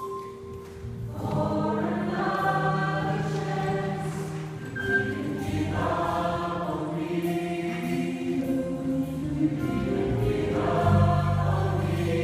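Gospel choir singing, the voices coming in fuller about a second in after a quieter opening, in sustained phrases that ease briefly twice.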